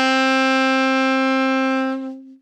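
Alto saxophone holding a single steady written A in the low register, fingered with two left-hand fingers and no octave key. It is one long, even note.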